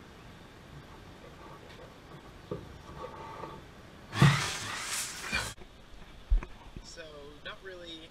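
Paper rustle of a thick repair manual's pages being handled and turned: one loud burst lasting about a second and a half, starting with a thump about halfway through.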